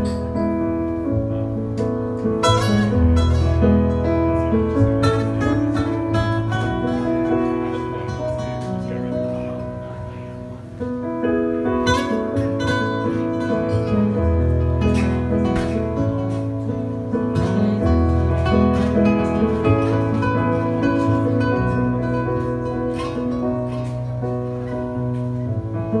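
Live acoustic guitar and electric keyboard playing a song together, the keyboard holding deep bass notes under the guitar. The music eases off briefly near the middle, then comes back in fuller.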